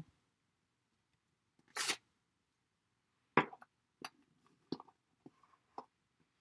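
Handling noises from stamping with a clear stamp on an acrylic block onto card stock: a short paper rustle about two seconds in, then about five light clicks and taps as the block is worked and set down.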